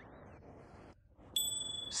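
A comedy sound-effect ding: one bright, high tone held for about half a second, starting about a second and a half in.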